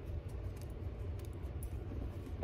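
Crampon strap webbing being threaded through its metal rings, with faint rustling and a few light metallic clicks.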